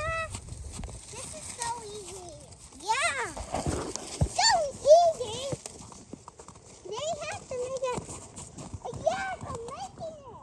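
A toddler babbling and squealing in short high-pitched calls that rise and fall, with pauses between them.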